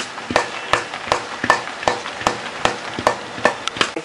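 Metal spoon stirring thick fermented idli batter in a steel vessel, clinking against the sides in a steady rhythm of about two to three clicks a second, over a faint hiss.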